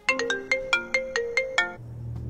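Mobile phone ringtone: a quick melody of about a dozen short notes that breaks off near the end, after which a low steady hum comes in.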